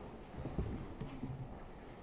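Faint, irregular low knocks and taps of a podium microphone being handled and adjusted.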